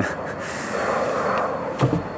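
A man's breathy, wordless laughter and exhaling, with a short voiced sound near the end.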